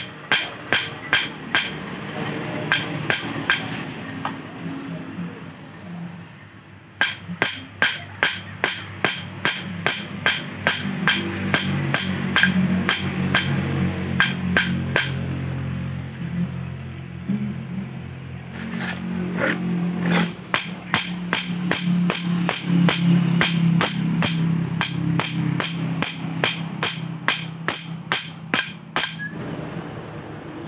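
Hammer striking stainless steel wire on a rusty iron block, pounding the wire to forge it into a fishhook. The blows come about three a second in runs of several seconds, with short pauses between, over background music.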